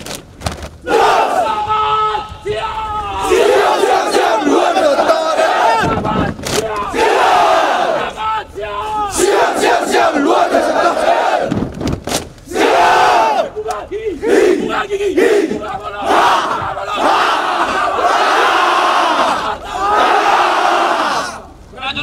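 A large massed troop of soldiers shouting a yel-yel, a unit chant, in unison: many male voices bellowing loud rhythmic phrases with brief pauses between them.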